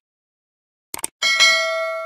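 Two quick clicks about a second in, then a bright bell ding with several tones that ring on and slowly fade: the click-and-bell sound effect of a subscribe-button animation.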